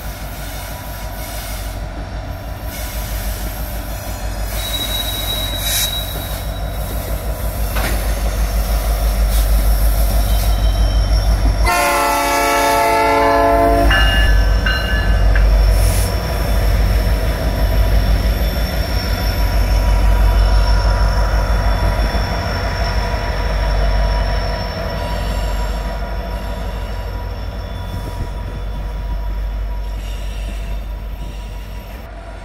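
Norfolk Southern freight train passing: the diesel locomotives rumble, louder in the middle as a unit goes under the bridge, and steel wheels squeal thinly on the tank cars. About twelve seconds in, a locomotive horn sounds one chord for about two seconds.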